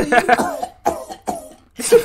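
A man coughing, a few short, sharp coughs about a second in.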